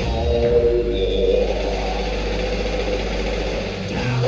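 Live rock band playing, a low bass note held steady under a wavering mid-range guitar or keyboard line, without vocals.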